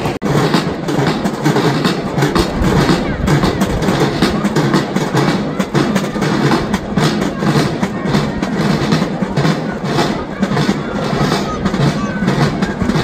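Many small hand drums beaten together by a crowd of schoolchildren, a dense, continuous drumming without a clear common beat, with children's voices mixed in.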